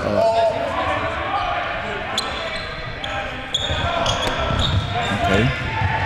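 A basketball bouncing on a hardwood gym floor, with a few short, high squeaks scattered through and the general noise of a game echoing in a large gym.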